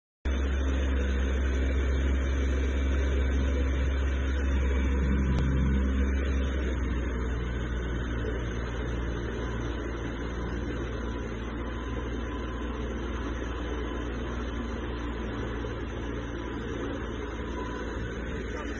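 Speedboat engine running steadily under way, a continuous low rumble mixed with the rush of water and wind. The rumble eases slightly about six seconds in.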